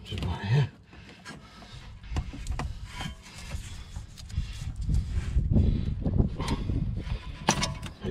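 Gloved hands working a BMW E60 brake pad wear sensor's plastic plug and wire loose: uneven rubbing and handling noise with a few small clicks.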